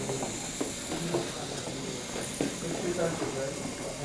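Faint, indistinct background talk from several people in a room, over a steady hiss.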